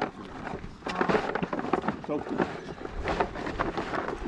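Miniature Hereford cattle crunching and chewing feed cubes at a trough: irregular crackling clicks.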